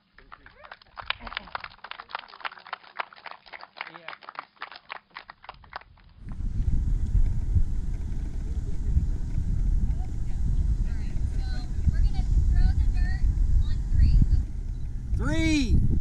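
A small crowd clapping for about five seconds. Then strong wind rumbling on the microphone, with faint voices talking and a countdown beginning near the end.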